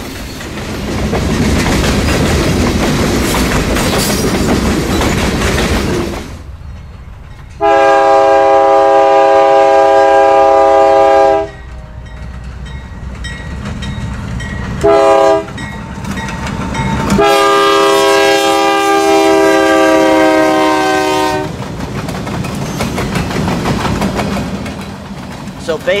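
Freight cars rolling past, steel wheels rumbling and clicking over the rail joints, then a GE Dash 8 locomotive's multi-chime air horn sounds a long blast about eight seconds in, a short one, and another long one. The rolling of the cars returns close by near the end.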